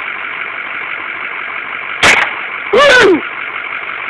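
A single 9mm handgun shot about two seconds in, a sharp, very loud crack, followed about half a second later by a short vocal exclamation, all over a steady hiss.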